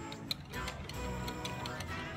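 A wire whisk stirring thin crepe batter in a glass bowl, its wires clicking irregularly against the glass, with one sharper click about a third of a second in, over background music.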